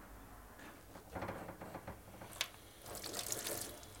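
Faint tap water running and splashing into a sink as dish soap is rinsed off a steel knife blade, with one sharp click a little after halfway.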